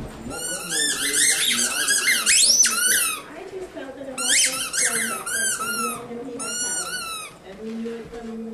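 Rubber squeaky dog toy being chewed by a puppy, squeaking in quick high-pitched runs: a long run in the first three seconds, another about four seconds in, and a short one near seven seconds.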